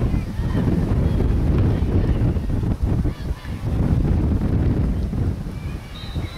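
Wind buffeting a camcorder's microphone: a loud, uneven low rumble that swells and dips for the whole stretch.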